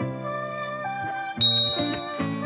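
Background music with sustained low notes, and about one and a half seconds in a single loud, bright bell ding that rings on and fades.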